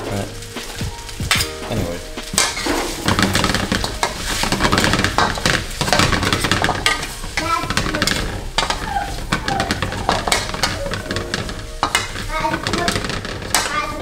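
Rice noodles sizzling in a hot wok while a metal ladle and spatula toss them, clinking and scraping against the pan many times throughout.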